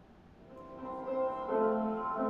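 Piano music starting softly about half a second in and swelling, with sustained chords and notes. It is the soundtrack of a tribute video, heard through the room's speakers.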